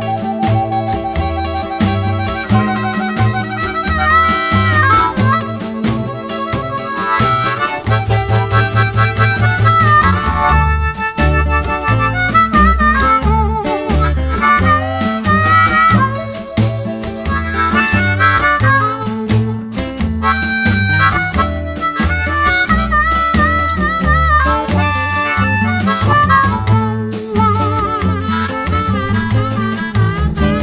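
Blues harmonica taking an instrumental solo with bent notes, over a band of guitar, bass and drums playing a steady beat.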